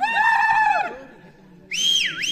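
Several voices shout together in high, rising-and-falling calls for about the first second. Near the end someone gives a loud, high whistle that rises and then swoops sharply down.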